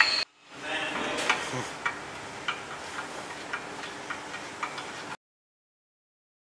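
Hand screwdriver driving screws into the top of an aluminum tire-rack support rail: light, evenly spaced ticks about twice a second over a faint hiss. The sound stops abruptly about five seconds in.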